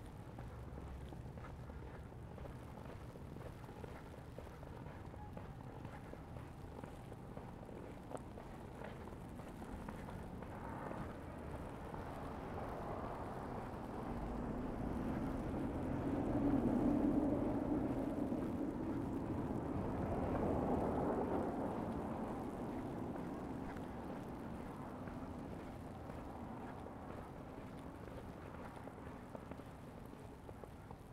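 Traffic noise on a snowy city street: a vehicle rumbles past, building to its loudest about halfway through, briefly again a few seconds later, then fading. Footsteps crunch in fresh snow underneath.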